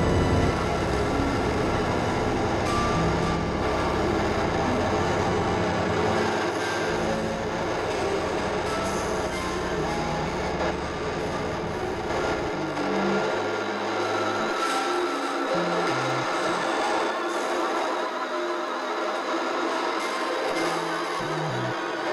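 Experimental electronic synthesizer music from the Novation Supernova II and Korg microKORG XL: a dense, grainy wash of noise and drones across the whole range. Low stepped bass tones run under it for the first half, then mostly drop away, leaving only scattered low notes.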